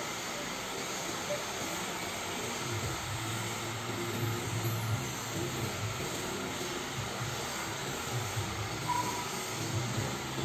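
A steady mechanical hum and hiss with a low drone that comes in about three seconds in and wavers after that.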